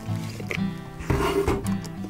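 Background guitar music, with a few brief clicks and rattles from a metal tape measure being moved over the casing.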